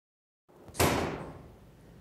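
A single sharp bang just under a second in, dying away over about half a second.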